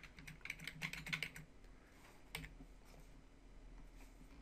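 Quiet typing on a computer keyboard: a quick run of keystrokes in the first second and a half, then a single further click about two and a half seconds in.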